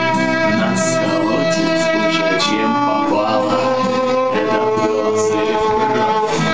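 Violin and guitar playing an instrumental passage together: the violin holds long bowed notes, changing pitch about every second, over guitar accompaniment.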